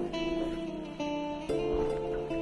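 Background music: acoustic guitar picking single notes, with a new note struck about every half second.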